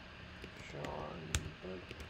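Typing on a computer keyboard: a few sharp key clicks, one louder than the rest about a second and a half in, under a faint low voice.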